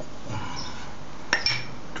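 A single sharp clink of hard kitchenware, like glass or crockery, with a short high ring, a bit over a second in, over a low background.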